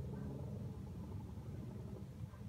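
Steady low background rumble, faint and even throughout, with no other distinct sound.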